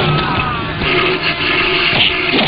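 Dramatic film soundtrack: background music overlaid with a noisy sound effect that grows stronger about a second in.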